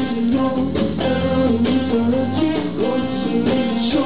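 Live band playing an instrumental passage on electric guitar, bass guitar and a drum kit, with a bending melodic line over a steady bass and drum beat.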